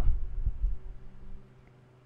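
Low, dull thumps and rumble of movement or handling picked up by a desk microphone, dying away in the first second and a half, leaving a faint steady electrical hum.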